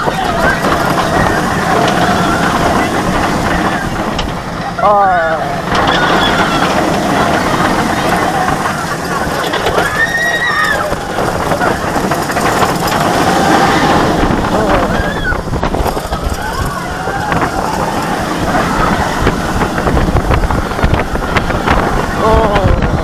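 Steel inverted roller coaster (Talon, a Bolliger & Mabillard) running through its course: a steady roar of wind and train on the track, with riders' screams and yells rising and falling at intervals.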